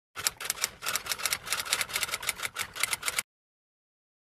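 Typewriter typing sound effect: a rapid run of mechanical keystroke clicks, several a second, that stops abruptly a little after three seconds in.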